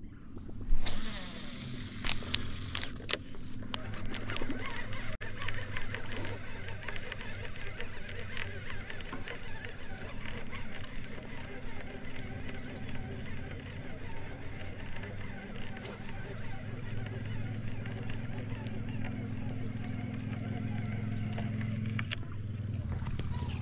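A loud rush of noise about a second in as the cast lure goes out and lands, then a baitcasting reel cranked to bring the lure back, its gears giving a fast, irregular clicking over a steady low hum.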